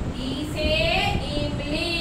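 Singing voices in drawn-out notes that waver and slide in pitch, over a steady low background noise.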